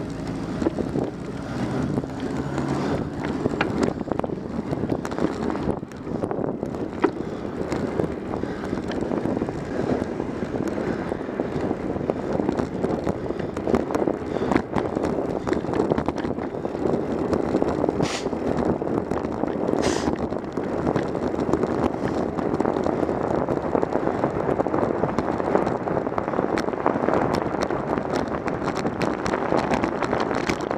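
Wind and road noise on a bicycle-mounted camera's microphone as the bike rides along a street, with a constant light rattling. A car engine idles ahead in the first few seconds. Two short high-pitched sounds come about two-thirds of the way through.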